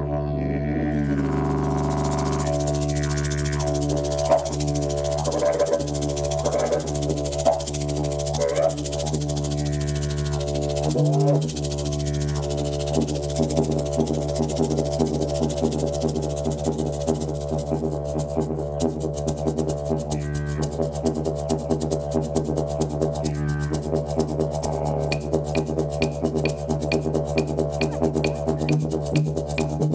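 Wooden didgeridoo played with a continuous low drone, its overtones shifting and sweeping as the mouth shapes the sound; the drone breaks briefly about 11 seconds in. In the last third a hand shaker joins in a quick, steady rhythm.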